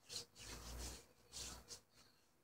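Hands rubbing body oil onto bare skin of the arm: three faint, soft swishes of skin sliding on skin.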